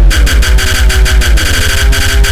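Hardtekk electronic dance music: a fast, pounding, distorted kick-drum beat under a synth line that slides down in pitch twice.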